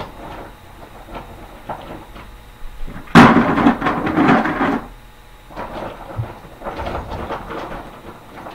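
Rocks tipped into the bottom of a white plastic five-gallon bucket, a loud rattle starting suddenly about three seconds in and lasting under two seconds, then lighter rattling as the stones are moved around by hand.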